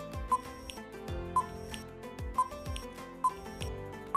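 Quiz countdown timer ticking four times, about a second apart, over background music with sustained notes and low falling drum hits.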